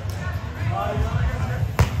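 A volleyball struck once, hard, by a player's hand near the end: a single sharp slap, with players' voices in the background.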